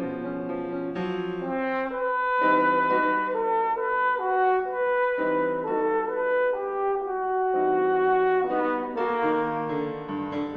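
Tenor trombone playing a melodic line of held notes that step up and down in pitch.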